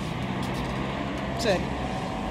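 A steady low motor hum that fades after about a second.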